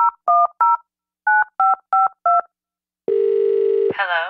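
Touch-tone telephone keypad dialing: seven short two-tone beeps, three and then four after a brief pause. About three seconds in, a steady low telephone tone follows, as a sound effect opening a song.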